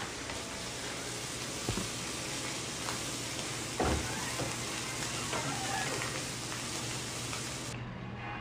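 A steady, even hiss of noise, with a short thud a little under two seconds in and a louder one near the middle; the hiss cuts off suddenly near the end.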